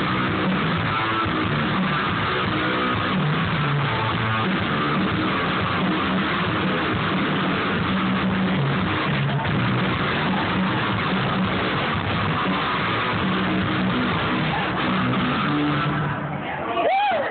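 Rock band's sound check: electric guitar with bass, played loud through a large PA system, continuous with shifting low notes.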